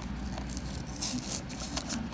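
Small cardboard blind box handled and pried open one-handed: rustling, scraping and light clicks of the card, with a longer scratchy rustle about a second in.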